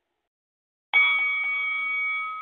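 A bell struck once about a second in, ringing on with a slow fade. It is the bell that signals the start of the battle round.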